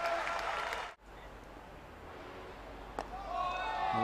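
Crowd noise in a cricket ground that cuts off abruptly just before a second in, leaving quieter crowd ambience. About three seconds in comes a single sharp knock of the bat hitting the ball.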